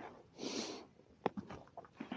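A man's short, hissy breath through the nose about half a second in, followed by a few faint clicks.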